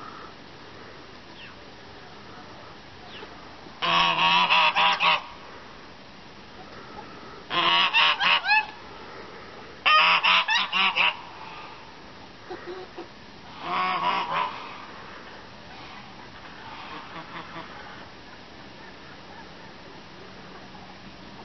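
Domestic geese honking in four loud bouts of rapid repeated honks, each about a second long, with a few fainter calls in between.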